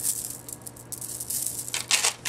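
Strands of faux pearl beads clicking and rattling against each other as the necklace is lifted and laid out on a wooden tabletop, in a few busy flurries.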